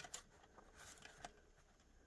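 Near silence: room tone, with a few faint clicks and rustles as the paper pumpkin lantern lights are handled.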